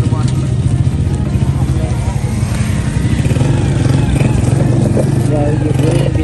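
A motorcycle engine running steadily close by, a continuous low rumble, with people's voices over it.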